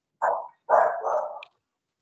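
A dog barking twice, a short bark then a longer one, picked up through a participant's microphone on a video call.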